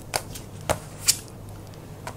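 A deck of tarot cards shuffled by hand, with a few sharp snaps of cards against each other in the first second or so, then softer card rustle.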